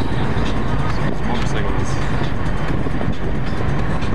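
Steady road noise inside a moving car's cabin: a constant low rumble of tyres and engine as the car drives along a winding road.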